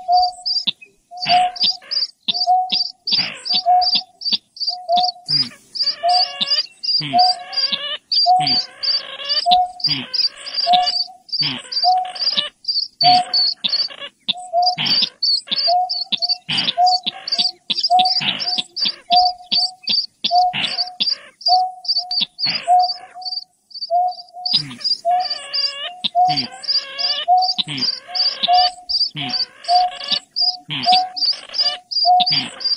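Bird-lure recording of greater painted-snipe and chàng nghịch rail calls: low hooting notes repeat about once a second over a steady train of high chirps. A harsher, wavering chatter comes in a few seconds in and again near the end.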